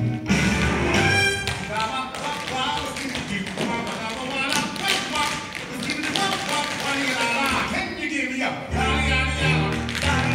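Dance music playing while a group of dancers' tap shoes strike the stage floor in quick, uneven clusters of taps.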